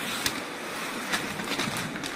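Ice hockey play: skates scraping on the ice, with a few sharp clacks about a quarter second in, past the middle and near the end.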